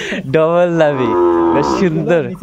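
A Sahiwal bull calf mooing: one long, level call lasting about a second and a half.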